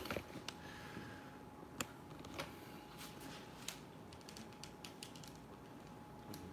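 Quiet room tone with faint, irregular light clicks and taps scattered throughout, over a faint steady hum.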